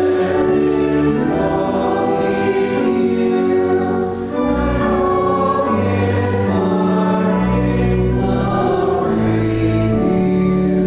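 Church congregation singing a hymn with keyboard accompaniment, in long held chords with sustained bass notes.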